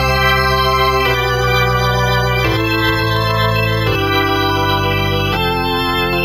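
Korg Triton LE 76 synthesizer playing its 'Full Drawbars' organ program, an electric-organ sound with every drawbar pulled out. It plays full sustained chords that change about every second and a half.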